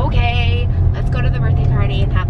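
Steady low road and engine rumble inside a moving car's cabin, with people talking over it.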